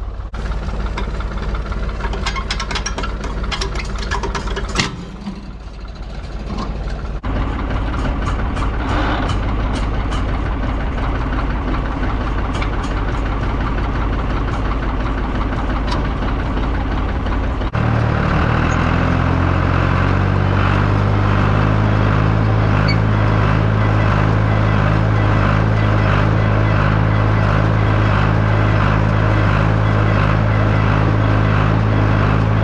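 John Deere 820 tractor engine running, with metallic clicks and knocks over it in the first few seconds. From about eighteen seconds in the tractor runs louder and deeper, driving a New Idea 551 small square baler with a regular beat as it starts baling hay.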